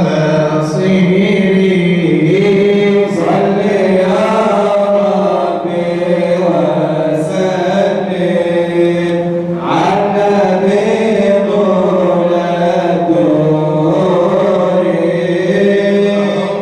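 Men's voices chanting madih nabawi, Islamic devotional praise of the Prophet, in long held and gliding melodic lines without a break.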